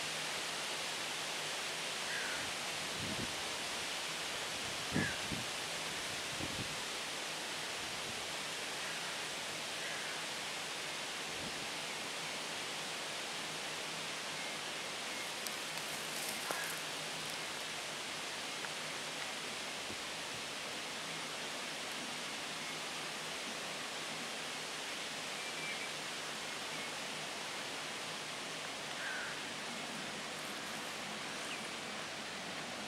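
An inland cargo ship passing close by on a canal: a steady rushing hiss with the faint low hum of the ship's engine beneath it. A few soft low thumps come a few seconds in, and there are scattered faint bird chirps.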